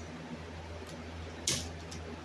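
Quiet room tone with a steady low hum, and one short soft hiss about a second and a half in.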